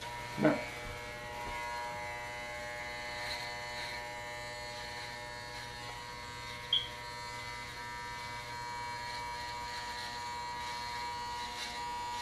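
Electric hair clippers running with a steady buzz while cutting a design into short hair. A brief small click comes about seven seconds in.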